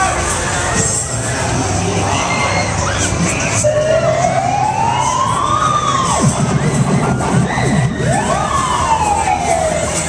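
Fairground crowd noise and shouting from a spinning ride, overlaid by a siren-like wail that rises slowly for a couple of seconds and falls away, then sounds again falling near the end.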